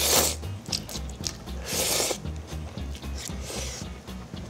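A person slurping instant ramen noodles: a long noisy slurp right at the start and another about two seconds in, with a few shorter ones between. Background music with a steady bass runs underneath.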